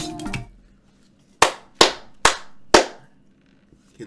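A song playing over speakers stops about half a second in. Then come four sharp hand claps, roughly half a second apart.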